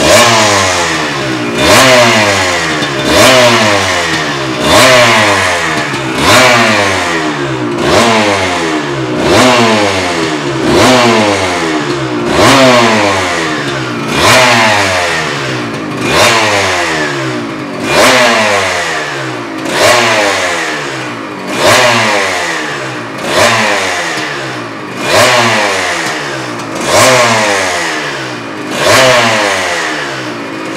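Aprilia RS 250's two-stroke V-twin being warmed up on the stand with short, even throttle blips about every one and a half seconds: each one a quick rise in revs that then falls away slowly, without revving it high.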